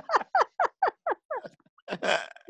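A woman laughing hard: a quick run of about eight falling 'ha' bursts, growing softer near the end.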